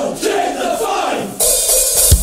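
Opening of an Oi! punk rock song: a group of male voices shouting in unison, with cymbals and hi-hat coming in sharply near the end, just before the full band.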